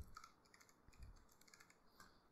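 A few faint computer keyboard keystrokes as a terminal command is typed, with near silence between them.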